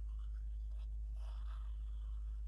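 Fine-tip nozzle of a liquid glue bottle scratching softly along cardstock as glue is run onto a flap, over a steady low hum.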